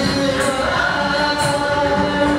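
Classical Indian dance music for a Bharatanatyam performance: a voice singing long held notes over the accompaniment, with a crisp high stroke about once a second keeping time.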